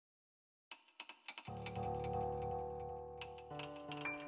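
Intro music: a scatter of sharp, high-ringing clicks, then a sustained low chord that enters about one and a half seconds in and shifts near the end, with ticking going on over it.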